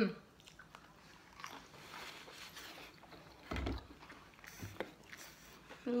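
Close-up chewing and biting of crispy battered fried mushroom and chicken, with a short hummed 'mm' at the start and a single dull thump about three and a half seconds in.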